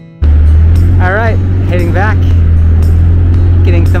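Side-by-side utility vehicle's engine running with a loud, steady low drone that starts abruptly about a quarter second in, heard from the seat. A voice talks over it.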